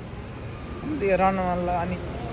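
Low rumble of city street traffic, with a voice holding one long, even vowel for about a second in the second half.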